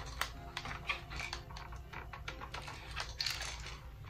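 Light, irregular plastic clicks and rattles from a cheap Draco-style AK BB gun being handled while its cocking mechanism is worked. The mechanism is broken: the cocking handle no longer pulls back.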